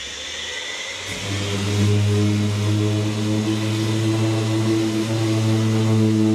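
Power orbital sander running against a chopped-carbon diffuser: a steady motor hum under the gritty hiss of the abrasive. The hum comes in strongly about a second in, and the sound grows louder from there.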